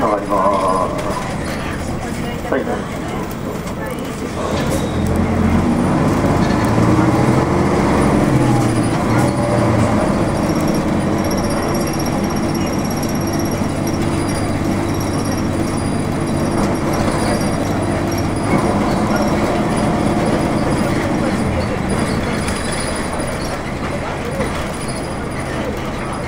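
Diesel engine of a 1992 Nissan Diesel U-UA440LSN city bus, heard from inside the cabin, revving up as the bus pulls away about four seconds in. Its pitch climbs in steps through the gear changes, then it runs steadily at cruising speed.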